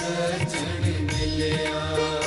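Sikh devotional kirtan: a shabad sung as a chant over sustained instrumental tones, with low, pitch-bending drum strokes about every half second to second.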